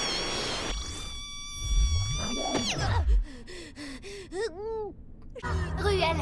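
Cartoon sound effects: a held, high ringing tone over a rushing noise that cuts off near the middle, with a low tone sweeping up and down. A quick run of short squeaky chirps follows, each rising and then falling, and music comes in near the end.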